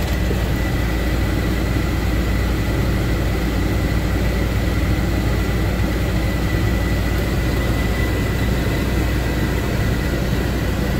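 Massey Ferguson tractor's diesel engine running steadily under way, heard from inside the cab, with a deep rumble and a thin steady high whine over it.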